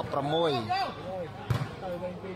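A single sharp thump of the game ball being struck, about one and a half seconds in, under excited male commentary.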